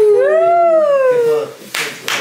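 People hooting a long drawn-out cheer, the pitch rising then falling, with a sharp clap near the end.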